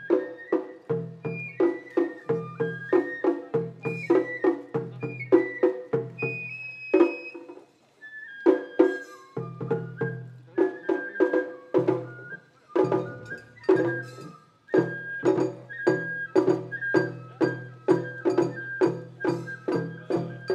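Matsuri-bayashi festival music: a shinobue bamboo flute plays a stepping melody over rapid, evenly paced taiko drum strokes, with brief pauses about eight and fourteen seconds in.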